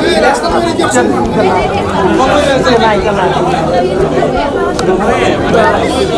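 Several people talking over one another at close range: busy overlapping chatter from a crowded group.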